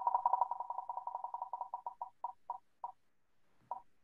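Online spinner wheel's tick sound effect as the wheel spins: short pitched ticks, about ten a second at first, slow and space out as the wheel decelerates. A last single tick comes near the end as it comes to rest.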